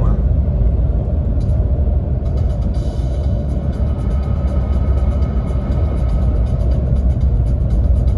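Steady low rumble of road and engine noise inside a car cabin at highway speed, with faint steady tones in the background from about two seconds in.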